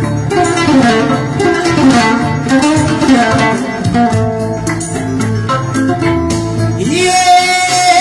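Live Mande griot music: a woman's voice sings through a microphone over plucked-string accompaniment and light percussion.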